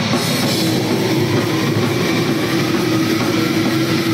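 Death metal band playing live: fast, dense drumming under distorted guitars, with a steady held note coming in about half a second in.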